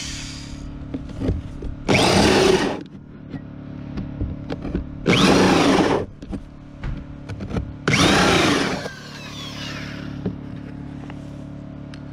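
Cordless drill spinning a two-inch hole saw through the wooden roof decking, cutting vent holes between the rafters. Three loud cutting bursts come about three seconds apart.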